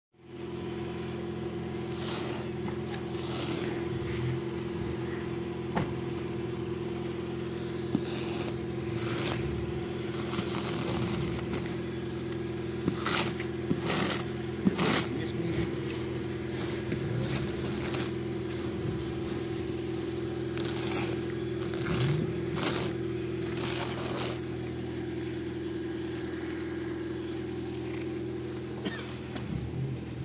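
A hand scraper pushes snow across a car's glass and paintwork in irregular scraping strokes. Under them runs a steady motor hum.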